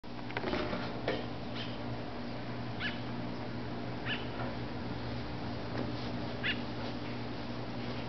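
A few short, high animal calls, spaced a second or more apart, over a steady low hum.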